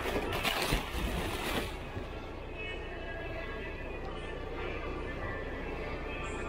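Clear plastic bag crinkling and rustling as a hand rummages in it, for about the first two seconds. After that, a steady background hum.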